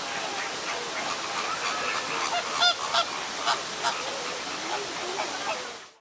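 A group of flamingos honking: many short, goose-like calls overlapping, the loudest cluster in the middle, over a steady noisy background, fading out at the end.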